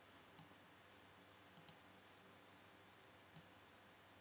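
Near silence broken by a few faint computer mouse clicks, two of them close together about a second and a half in.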